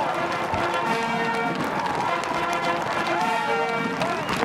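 Military brass band playing the musical honors for the newly sworn-in president, with held brass notes over drum strokes, while voices in the crowd cheer.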